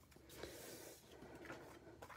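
Near silence, with two faint soft ticks of card stock being handled on a tabletop.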